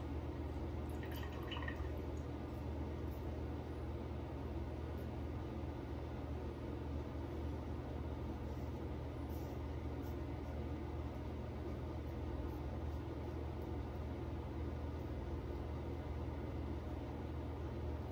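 Safety razor drawn in short strokes across lathered stubble, faint scraping over a steady rushing noise in a small, echoey bathroom.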